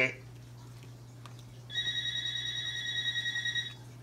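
A telephone ringing: one warbling ring of about two seconds, starting a little before the middle, left unanswered.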